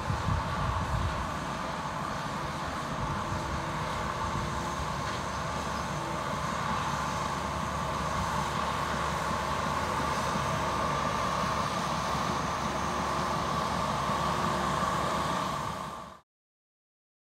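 Small crawler dozer's diesel engine running steadily as it pushes dirt, with a steady whine over a low rumble.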